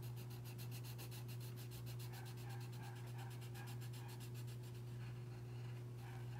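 Coloured pencil scribbling on paper in rapid, even back-and-forth strokes, colouring in a shape; the scribbling stops about five seconds in. A steady low hum runs underneath.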